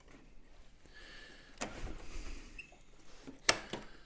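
Light handling and rubbing of plastic model parts, with a few small clicks and one sharp click about three and a half seconds in as a magnetic flap snaps into place on the scale model.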